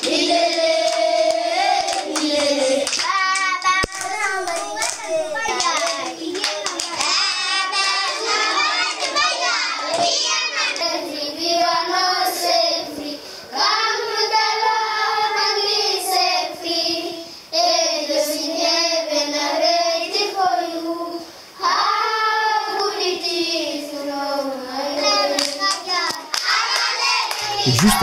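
A group of young schoolchildren singing a song together in phrases with short breaks, with hand clapping.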